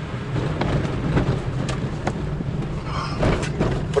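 Toyota RAV4 driving over a wet, potholed road, heard from inside the cabin: a steady low rumble of engine and tyres, with scattered knocks as the car goes over the broken surface.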